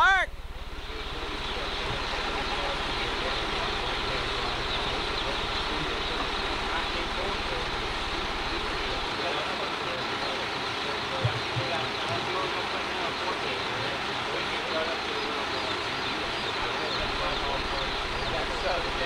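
A steady, dense chorus of many baby chicks peeping at once.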